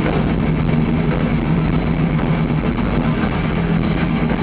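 Thrash metal band playing live at full volume: distorted electric guitars and bass over fast drumming, one continuous loud wall of sound.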